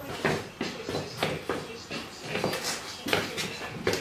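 Irregular clicks and knocks, about a dozen in a few seconds, of metal engine parts and tools being handled around a bare engine block.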